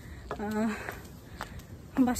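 Footsteps on a pavement as a woman walks, with a short sound from her voice about half a second in and one sharp click a little later.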